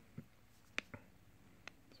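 Faint room tone with four light, sharp ticks spread over two seconds: the hard tip of an Adonit Pixel stylus tapping down on an iPad's glass screen while drawing.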